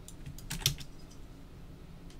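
Typing on a computer keyboard: a few light key clicks, with a quick run of louder keystrokes about half a second in.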